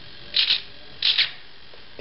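Small RC servo whirring briefly twice, driving the aileron to one side and then the other.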